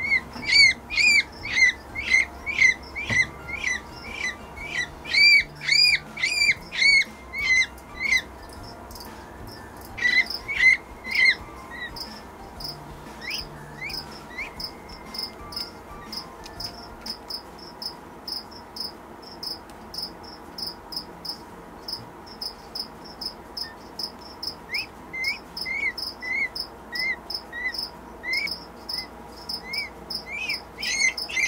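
A peachick peeping from inside its partly opened, hatching egg: loud, arching peeps about twice a second, breaking off for long stretches in the middle and starting again near the end. A fainter, higher, quicker chirping runs through the second half.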